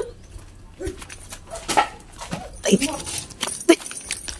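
An animal's short whining cries, about four of them roughly a second apart, each falling in pitch.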